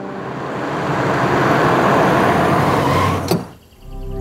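A swelling whoosh transition effect: rushing noise that builds for about three seconds and ends in a sharp click, then drops away briefly.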